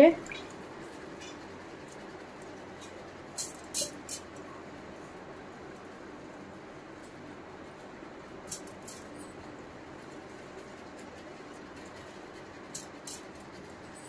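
Soaked rice being scooped by hand from a steel bowl into a stainless-steel mixer-grinder jar: a few soft wet clicks and taps, in small clusters a few seconds apart, over a steady low room hiss.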